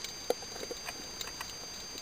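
Underwater ambience over a rocky seabed: irregular small clicks and crackles, the sharpest about a third of a second in, over a faint steady high whine.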